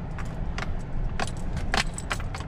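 Inside a pickup truck's cab, a low, steady engine and road rumble from a slow drive over rough ground, with irregular light jingling and rattling clicks over it.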